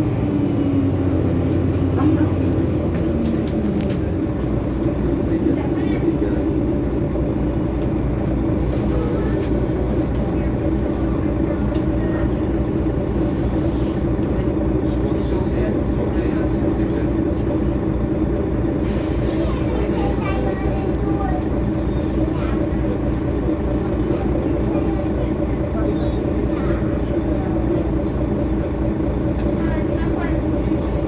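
Mercedes-Benz Citaro city bus engine running with a steady drone and rapid, even low pulses; in the first few seconds the engine note falls, then holds steady.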